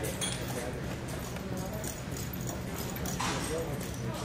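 Horse walking on soft arena dirt and stopping, over a steady low hum and background voices.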